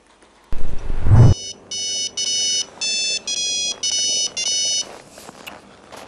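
Mobile phone ringing with a beeping electronic ringtone: a quick run of short tones that change in pitch, lasting about three seconds. Before it, about half a second in, a loud low burst of noise lasting under a second.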